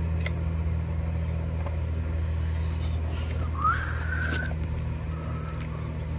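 A steady low mechanical hum, with a few faint clicks and one short rising chirp a little past halfway.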